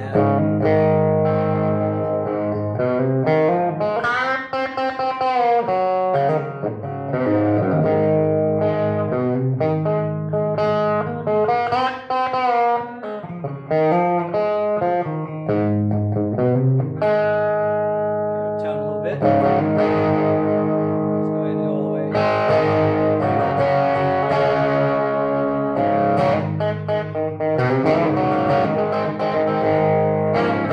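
Single-pickup SG Junior-style electric guitar played through an amp's overdrive channel: distorted sustained notes and bent lead lines, then chords strummed from about two-thirds of the way in.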